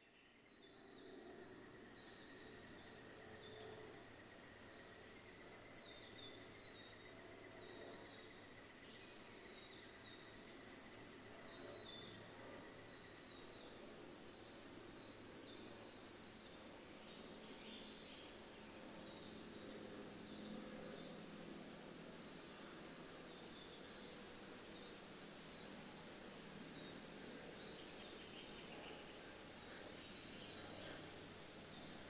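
Faint birds chirping and twittering in quick repeated phrases throughout, over a steady background hiss and low hum.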